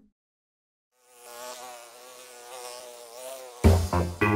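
Cartoon sound effect of a flying insect's wings buzzing: a steady, slightly wavering buzz lasting about two and a half seconds. Near the end it gives way to the loud start of a children's song.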